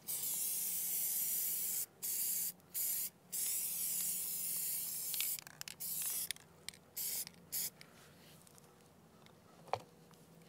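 Aerosol can of decoy conditioner spraying in a run of hissing bursts. The longest last about two seconds each, then several short puffs follow and the spraying stops a little before eight seconds in. A brief click comes near the end.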